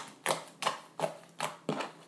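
Fingertips poking a large, sticky black floam slime studded with foam beads, making a quick series of short, sharp sounds at about three a second.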